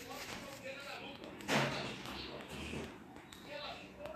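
Indistinct talking in the background, with one loud thump about one and a half seconds in.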